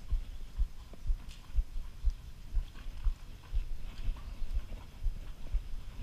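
Hoofbeats of a ridden horse on soft sand arena footing, heard from the saddle: dull thumps in a steady rhythm of about two a second.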